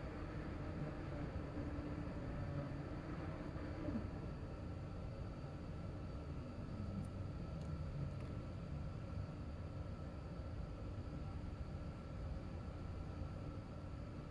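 Quiet, steady room tone: a low hum with a soft, even hiss and no distinct events.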